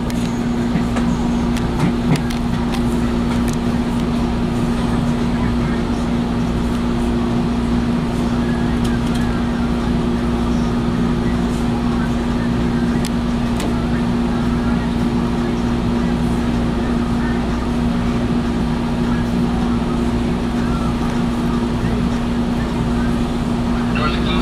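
Steady hum of a stationary Metrolink commuter train, heard from inside a passenger car: a constant low drone with an even rush of noise, and a few faint clicks.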